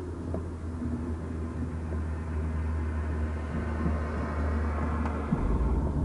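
Police car cabin noise heard from the back seat: a steady low vehicle rumble with a rising hiss that builds over several seconds, and a deeper shift in the rumble near the end.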